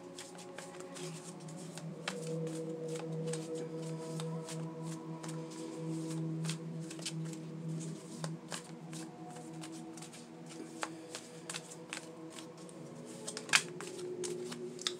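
A deck of tarot cards shuffled by hand, the cards sliding and flicking against each other in quick, irregular clicks. Soft background music with long held notes runs underneath.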